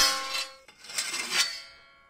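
Layered sword-hit sound effect made from pieces of metal banged together. A metal clang's ringing tones fade away, then a second clanging burst comes about a second in and rings out and dies away.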